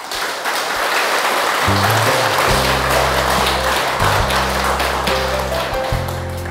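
Applause from an audience, with background music and steady bass notes coming in under it about two seconds in.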